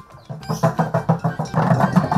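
Large wooden kerotok cattle bells clattering as they are shaken, their wooden clappers knocking in a fast, dense rhythm that starts about half a second in.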